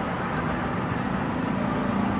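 Steady outdoor city ambience: a continuous traffic-like hum with no distinct events.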